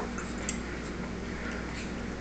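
Steady room hum and hiss with no clear event, and one short click about half a second in.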